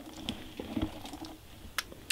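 A few faint light clicks and taps, with one sharp click near the end.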